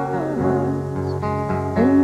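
Three women singing in close harmony on held notes over a band accompaniment, in a country song. The chord moves about a quarter of the way in, and again near the end.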